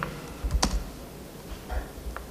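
A few separate key presses on a laptop keyboard, sharp clicks spaced out rather than continuous typing.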